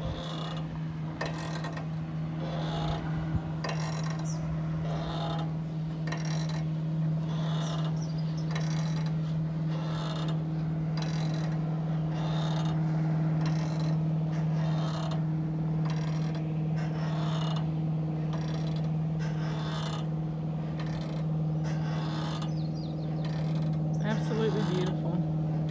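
Metal swing chains and S-hooks creaking in a steady rhythm, about once a second, as the hanging swing sways back and forth. A steady low hum runs underneath.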